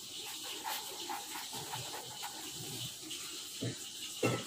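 Faint scratching of a felt-tip pen writing a word on paper on a clipboard, over a steady background hiss, with a soft knock near the end.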